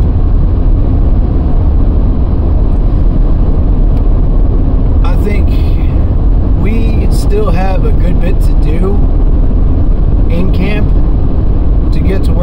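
Steady low road rumble and tyre noise inside a moving car, with a short stretch of indistinct talk in the middle.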